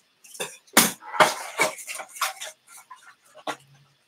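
Close handling of a plastic fashion doll and its clothes: a run of short clicks and rustles, with two heavier knocks about a second in.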